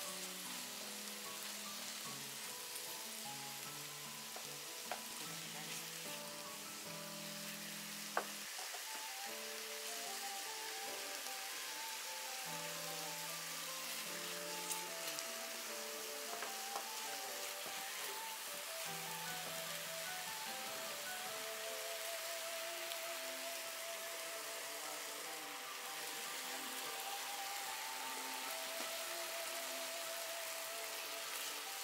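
Sukiyaki sizzling in its pan, a steady hiss of beef, scallops, leeks and shirataki frying. A soft, plinking background melody runs over it, and there is a single sharp click about eight seconds in.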